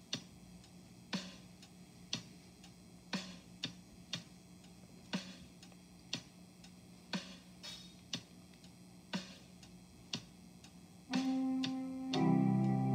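Slow, even ticking, about one sharp tick a second, with a few fainter ticks in between. About a second before the end, music comes in with a held chord.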